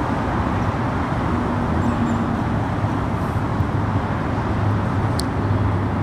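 Steady low background hum with a single faint click about five seconds in, as the blower motor's armature comes free of its magnet housing.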